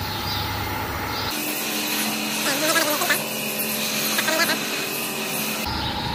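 Steady running noise of a rotary dairy shed's milking machinery, with the clusters attached and milking. Faint voices come through twice in the middle.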